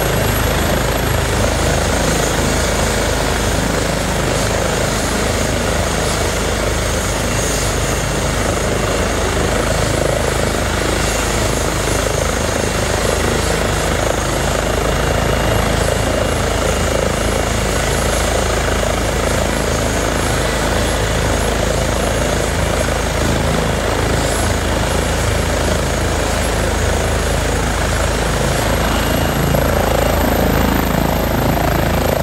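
Airbus H135 medical trauma helicopter running on the ground with its main rotor turning before take-off, a loud, steady turbine and rotor noise.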